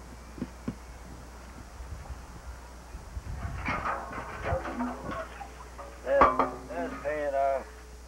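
A metal frying pan knocking and scraping against a large black cooking pot as it is lifted out, with the loudest clank about six seconds in.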